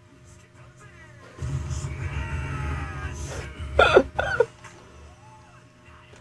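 Audio of an anime episode playing: a low rumbling sound effect with music-like haze from about a second and a half in, then two short, loud voice outbursts from a character around four seconds in.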